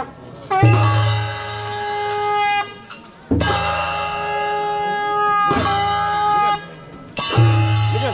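Traditional Newar festival music for a masked dance: a wind instrument plays long held notes, each phrase lasting about two seconds, four times, with a percussion stroke at the start of each phrase.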